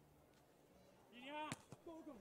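Mostly near silence. About one and a half seconds in there is a faint short shout, then a single sharp slap of a hand striking a beach volleyball at the net.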